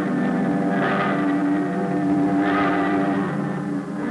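Rocket ship sound effect from a 1950s science-fiction serial: a steady electronic hum of several held tones, with a hissing swell that rises and falls about once every second and a half, about a second in and again past two and a half seconds. The hum falls away at the very end.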